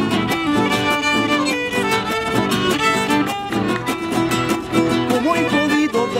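A violin and a steel-string acoustic guitar playing a tune together: the violin carries the melody over steady guitar strumming. A man's singing voice comes in near the end.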